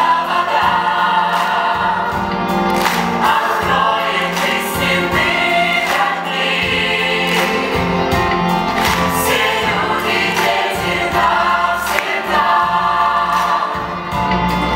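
Stage musical cast singing a song in chorus over musical accompaniment, held notes and many voices together.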